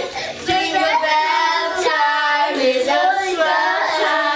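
Young girls singing a song together, holding each note for about a second.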